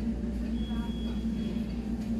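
Steady low hum of a large store's background noise, with a faint thin high-pitched tone in the middle and a brief faint voice about three quarters of a second in.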